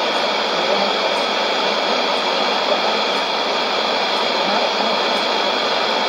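Sony ICF-2001D receiver tuned to 11530 kHz AM and playing a weak shortwave signal. It gives a steady rushing noise, with the broadcast voice buried in it and too faint to make out.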